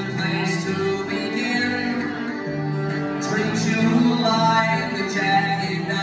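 Live acoustic string band playing: fiddle, acoustic guitar and upright bass.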